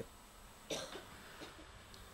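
A single short cough, soft against quiet room tone, about two-thirds of a second in.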